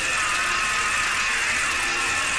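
Loud, steady electric buzz from a cartoon telephone earpiece as the call is put through, lasting about three seconds.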